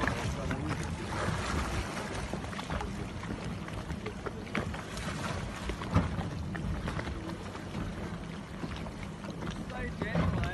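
Wind buffeting the microphone over choppy sea, with water lapping and splashing. A single sharp knock about six seconds in.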